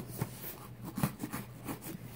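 Knife blade scraping and slitting the packing tape along a cardboard box's seam, a run of irregular short scratches.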